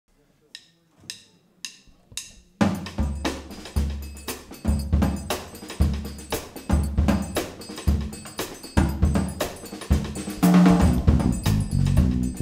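A four-click count-in, evenly spaced about half a second apart, then a jazz-funk band comes in together on the beat with electric bass and drum kit playing a driving groove; the sound thickens as more instruments join near the end.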